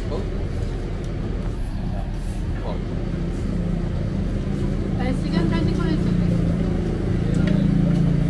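A bus engine running close by: a steady low rumble that grows louder and more humming from about halfway through, with voices talking faintly underneath.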